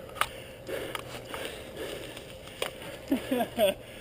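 Mountain bike riding past on a dirt trail: tyres rolling over dirt and dry leaves, with scattered sharp clicks and rattles from the bike. A short burst of voice near the end.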